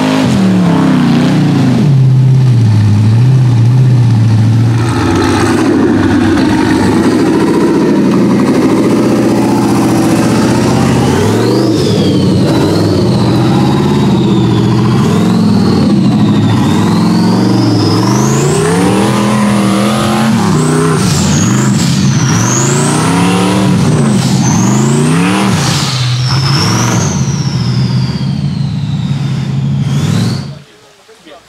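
Off-road rock buggy engine revving hard at full throttle in repeated surges, its pitch climbing and dropping again and again. From about twelve seconds in, a high whine rises and falls along with the revs.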